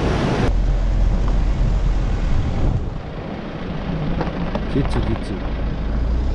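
Loud rushing of a fast glacial river for about half a second, then a sudden cut to a steady low vehicle rumble.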